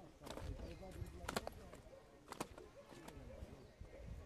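Faint murmur of distant voices over a low rumble, with a few sharp clicks from hands working small fishing tackle, the two loudest about a second apart.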